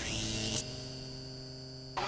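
Synthesized electronic drone from a graphics sting: a steady hum made of several held tones. It drops in level about half a second in and cuts off suddenly at the end.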